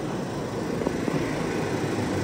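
Steady low mechanical rumble, with a single sharp click a little under a second in.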